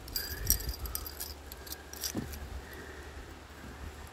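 Small metal items jingling and clinking as they are handled, mostly in the first second, with a few lighter clinks after.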